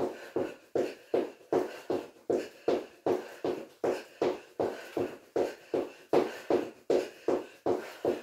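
Light, quick hops in trainers landing on a wooden floor, a steady rhythm of about three soft landings a second.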